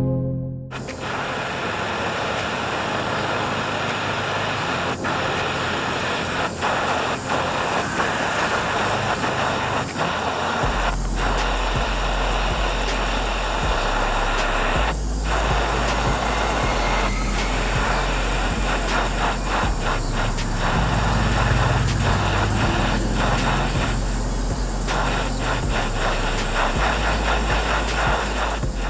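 A jeweller's gas torch flame hissing steadily while heating a gold ring red-hot to solder its prongs, with occasional sharp clicks.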